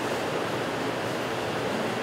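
Steady, even rushing noise with no distinct events.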